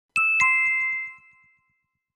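A two-note chime sound effect: a higher note then a lower one about a quarter second apart, both ringing out and fading within about a second and a half.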